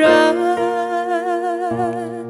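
A woman's voice holds a long, wavering, hum-like note over sustained electric keyboard chords in a worship song. Near the end the chord changes to a lower bass note.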